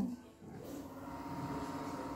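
A tuxedo cat's falling meow tails off at the start, followed by soft, steady purring that slowly grows louder.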